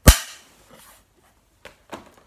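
A film clapperboard snapped shut: one loud, sharp clap that dies away quickly. Two fainter knocks follow near the end.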